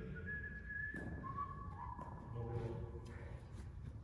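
A person whistling a few notes: a held higher note in the first second, then shorter, lower notes stepping down. Faint talk sits underneath.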